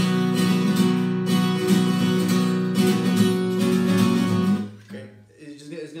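Capoed steel-string acoustic guitar strummed hard with a tensed-up wrist, a rapid run of heavy chord strums for about four and a half seconds, then left to ring out and fade. It is a demonstration of the stiff, tense strumming that the player says will sound really, really ugly, as opposed to relaxed small strums.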